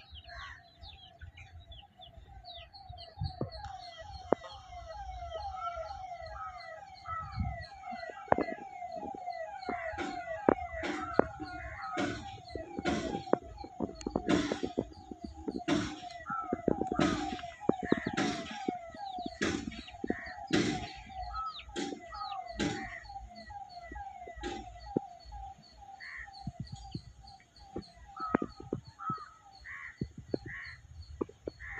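Domestic hens clucking and chicks peeping while they forage, with many short, sharp, loud calls, thickest from about ten seconds in to about twenty seconds. Under it a steady, rapidly warbling tone carries on in the background.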